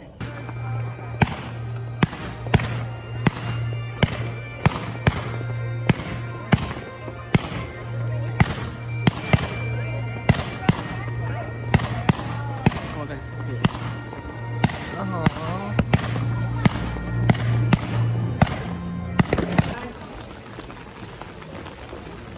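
Fireworks display: a rapid string of sharp bangs, about two a second, that starts about a second in and stops shortly before the end.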